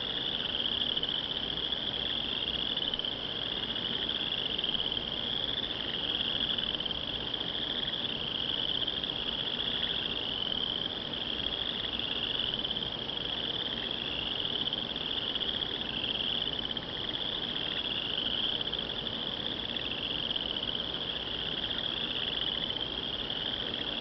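A steady, high-pitched chorus of calling insects such as crickets, pulsing evenly without a break.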